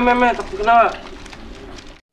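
A person's voice making drawn-out sounds at a steady pitch in the first second, the last one falling away, followed by a quieter stretch with a faint steady hum.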